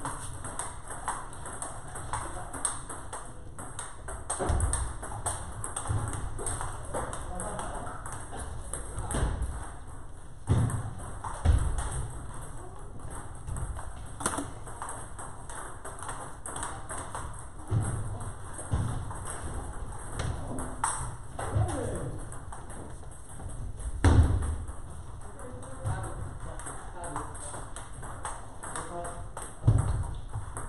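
Table tennis balls clicking off paddles and tables in quick, irregular rallies from several games at once, over background voices. Occasional low thumps, the loudest about 24 seconds in.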